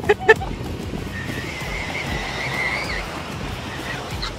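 A child's long, high-pitched squeal lasting about two seconds, rising at its end. It comes just after a quick burst of laughter at the very start, over a steady hiss of surf and wind.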